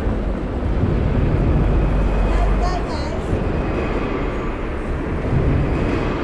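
City street noise picked up by a handheld phone: a steady rumble of traffic and general hubbub, heaviest in the low range, with faint voices in the mix.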